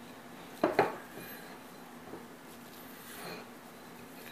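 Hands folding a flour tortilla on a plate: soft rubbing and handling, with one sharp knock against the plate a little under a second in.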